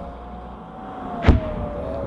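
A single sharp, loud boom from a 60 mm mortar about a second and a half in, with a brief low rumble after it.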